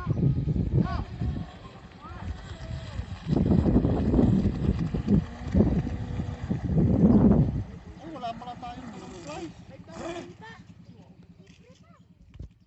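Indistinct voices of people talking, with louder stretches about three to four seconds in and again around seven seconds, then fading away near the end.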